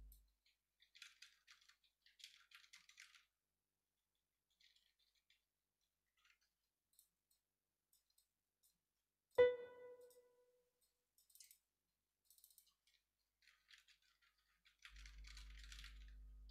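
Mostly quiet, with faint scattered scratching and rustling. About nine seconds in, a single pitched note strikes sharply and fades within about a second.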